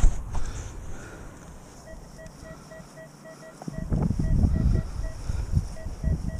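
Metal detector beeping: short electronic beeps of one steady pitch, about six a second, starting about two seconds in, breaking off briefly and resuming. From about four seconds in, louder rustling and thumps of movement over grass join it.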